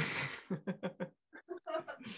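Laughter over a video call: a breathy burst of laughing, then a quick run of short laughing pulses and a few more near the end.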